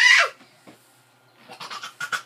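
A child's high voice sliding up in pitch and back down, ending sharply about a third of a second in. After a quiet second, short quick clicky vocal sounds start near the end.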